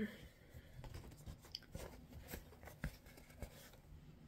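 Faint rustling of a sheet of cross-stitch fabric being handled and turned over, with a few small clicks and taps.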